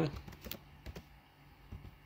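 Computer keyboard keys being typed: a few faint, irregularly spaced keystrokes as a stock ticker is entered into a search box.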